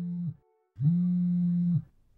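A low male voice humming long held notes on one steady pitch: one note ends just after the start, and after a short pause a second note is held for about a second.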